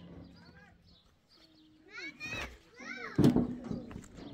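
Children calling out in high, rising-and-falling voices, with a sharp knock a little after three seconds in that is the loudest sound.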